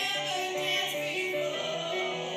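Singing in a musical-theatre style, a melody of held notes stepping from one pitch to the next.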